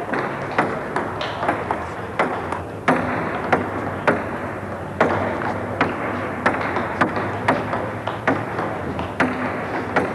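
Table tennis balls clicking off bats and tables in rallies at more than one table: sharp, irregular clicks, about two a second, over the low hum of a hall.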